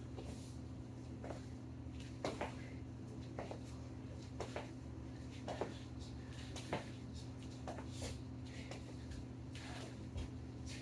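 Sneakered feet landing on a garage floor during jump lunges, a short thud about once a second, over a steady low hum.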